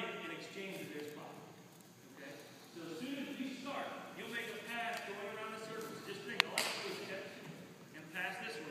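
Indistinct voices talking in a gymnasium, with a single sharp knock about six and a half seconds in.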